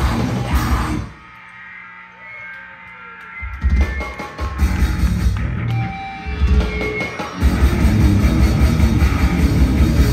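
Live grindcore band, with distorted electric guitar, bass and drum kit, playing loud. About a second in the band cuts out abruptly, leaving a short quieter gap with faint ringing guitar tones. Stop-start hits come back around three and a half seconds in, and the full band resumes nonstop at about seven and a half seconds.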